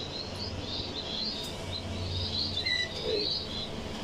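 Small birds chirping over and over in a high twitter, with a short lower call about three seconds in.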